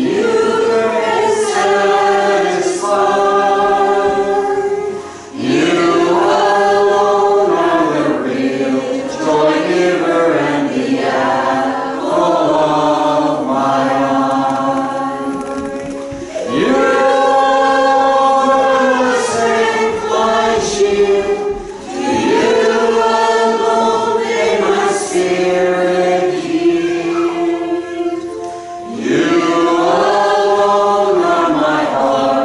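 Small church choir singing with mixed voices, in long held phrases broken by short pauses for breath every several seconds.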